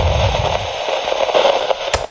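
Crackling static glitch sound effect, with a low rumble fading out in the first half second and a sharp click just before it cuts off.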